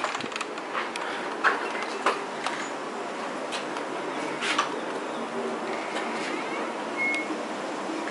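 Steady outdoor ambient hiss on a balcony, with a few soft knocks and a single brief high chirp near the end.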